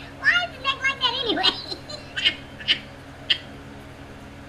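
A high-pitched, wordless voice sound lasting about a second near the start, followed by three short, sharp sounds.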